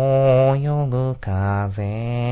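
A single low voice singing slowly without accompaniment, in long held notes that waver slightly, with a brief break about a second in and then a lower note.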